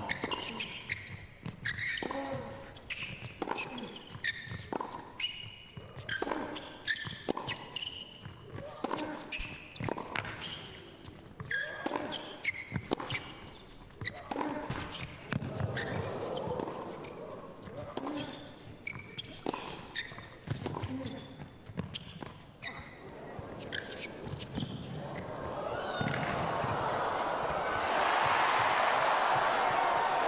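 Tennis rally: racket strokes and ball bounces knock about once a second. Over the last several seconds a crowd cheers and applauds, swelling as the point ends.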